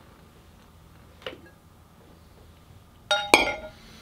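Glass lid of a covered serving dish clinking as it comes off: a faint knock about a second in, then two sharp clinks close together near the end, ringing briefly.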